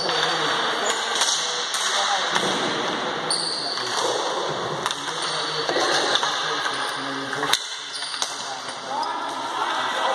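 Ball hockey play in a large sports hall: sharp clacks of sticks striking the ball and the floor, with players' shouts carrying around the hall.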